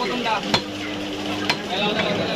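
Two sharp chops of a large curved butcher's knife striking into chicken on a wooden chopping stump, about a second apart, over a busy market's background noise.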